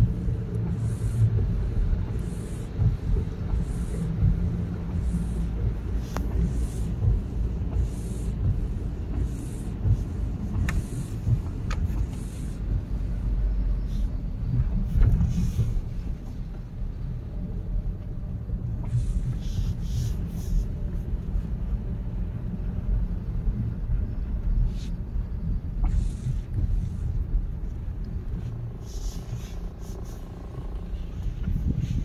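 Car driving on a rain-wet road heard from inside the cabin: a steady low rumble of engine and tyres. Windscreen wipers swish across the glass about once a second for the first twelve seconds or so, then only now and then.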